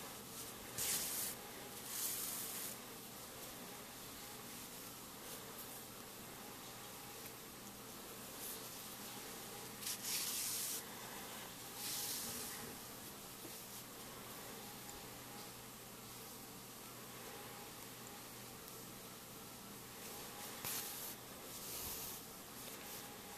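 Yarn being drawn through crocheted stitches while sewing by hand with a needle: a handful of short, soft rasps scattered through, over a faint steady hiss.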